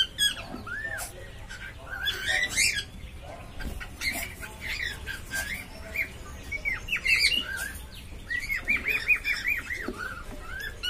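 Cockatiels in a wooden nest box making short chirping calls again and again, with a quick run of repeated chirps near the end.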